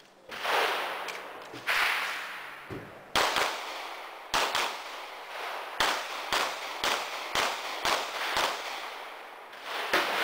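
A string of about a dozen gunshots at a shooting range, many fired in quick pairs a fraction of a second apart, with pauses of about a second between groups.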